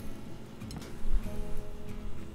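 Background music with guitar, its notes held steadily.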